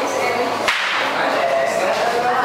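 Several people talking at once in a room, with one sharp crack cutting through the chatter less than a second in.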